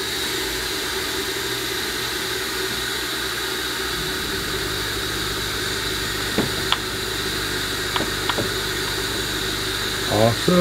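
Cylinder head seat machine running steadily, a constant noise with a high thin whine over a lower hum, with a few light ticks in the second half.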